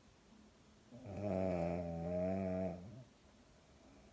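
A sleeping pug giving one long, low-pitched snore of about two seconds, starting about a second in.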